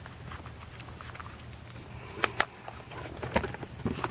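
A few light clicks and knocks of knives and boxes being handled in a plastic toolbox: two sharp clicks a little after two seconds in, then more near the end as a cardboard knife box is picked up. A faint low hum runs underneath.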